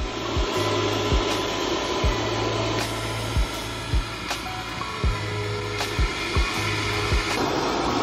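Ryobi 18V cordless workshop blower running steadily on a high setting, its air stream blowing straight into glowing binchotan charcoal in a chimney starter to bring it up to heat. Background music with a beat of low thuds about once a second plays underneath.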